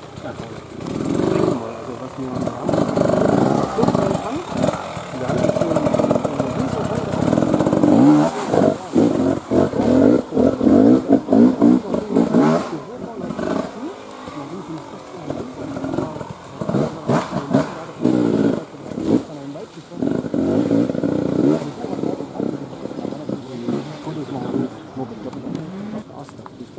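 Enduro dirt-bike engine revving unevenly, the throttle rising and falling again and again as the bike is worked over a rough trail; a second bike is heard near the end.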